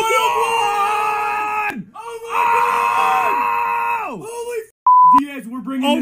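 Two long, drawn-out screams of excitement, each about two seconds, at the pull of a one-of-one card. Near the end comes a short steady censor bleep, and talking starts right after it.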